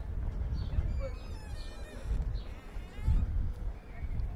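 Wind buffeting the microphone in an uneven low rumble, with short falling bird chirps and a brief wavering high-pitched call about a second in.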